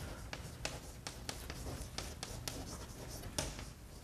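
Writing on a lecture-hall board: a quick run of short scratches and taps as a statement is written out, over a faint steady room hum.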